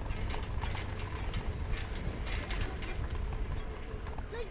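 Riding noise from a moving bicycle: a steady low rumble of wind on the microphone with irregular light clicks and rattles.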